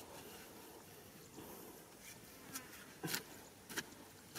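A short wooden-handled hoe chops into damp clay soil twice near the end, two short sharp thuds. Under them runs a faint steady buzz.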